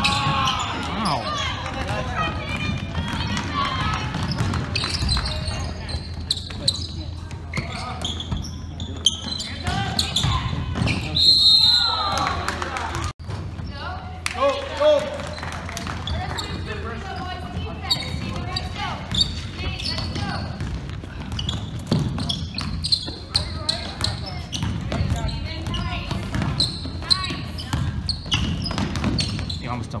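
Basketball game play: the ball bouncing on a hardwood gym floor in frequent sharp knocks, mixed with voices calling out in the gym.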